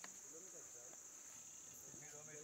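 Faint, steady high-pitched insect chorus in the forest, a continuous shrill drone like crickets.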